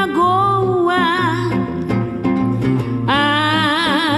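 A woman singing samba with a wide vibrato on long held notes, over plucked guitar accompaniment.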